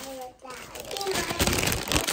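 Clothes rustling and being handled, with rubbing and knocking on the phone camera, under a toddler's babbling voice.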